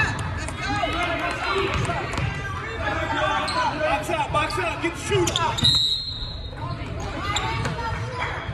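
Basketball bounced on a hardwood gym floor as a player dribbles at the free-throw line, amid many voices of spectators and players echoing in the gym.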